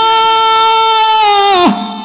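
A man's voice holding one long, high, steady note on the drawn-out call "Maa" (mother), sung in the chanting style of a Bengali waz sermon. It falls away sharply near the end.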